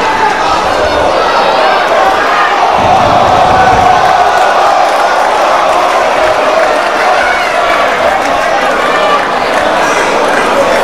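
Crowd of spectators shouting and cheering in a hall during a kickboxing bout, many voices overlapping, steady throughout.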